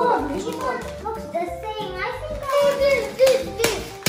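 Young children talking and calling out, their high voices overlapping.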